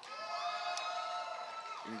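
One long, high-pitched cheering shout from a spectator, held steady for about a second and a half and dropping away at the end, as a fighter walks out.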